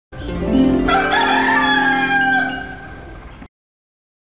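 A rooster crowing: one long call that slides slightly down in pitch, over a low held tone, then cuts off suddenly about three and a half seconds in.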